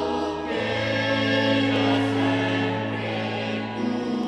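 A choir singing a hymn with a sustained held accompaniment; the bass note steps up about half a second in.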